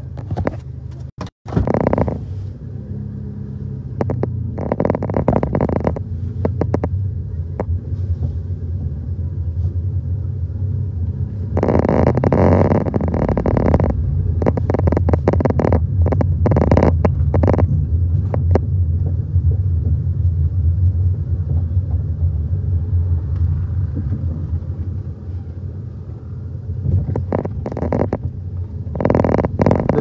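Steady low rumble overlaid by irregular bursts of rustling noise, typical of wind and handling on a handheld phone microphone as it moves along a street. The bursts are strongest about halfway through.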